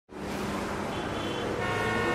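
City traffic noise with car horns, fading in at the start; steady tones begin to build under it in the second half as intro music comes in.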